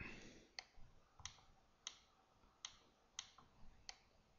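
Computer mouse clicking: about six faint, separate clicks about half a second apart, repeated presses on a setting that does not respond.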